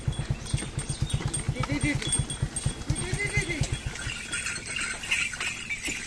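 Bullock carts heavily loaded with paddy straw passing on a dirt track. A steady low thumping of about eight beats a second stops about four seconds in, with voices.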